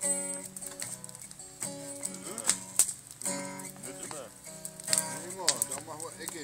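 Live music for a blues song in the gap between sung lines: held chord notes with sharp strokes now and then, and brief voice-like sounds partway through.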